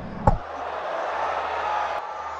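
A single sharp knock of a cricket ball striking the batter's leg pad about a quarter second in, heard on the stump microphone in the replay of an LBW appeal, followed by steady stadium crowd noise.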